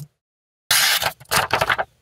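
Sheet of paper being sliced by a folding knife: two quick dry, hissing cuts starting under a second in. The edge has just been sharpened on the unglazed ceramic ring of a coffee mug and slices the paper cleanly.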